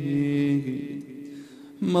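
A man's solo chanted lament in Arabic, sung into a microphone: he holds a long note that steps down and fades, then comes in loudly with the next line near the end.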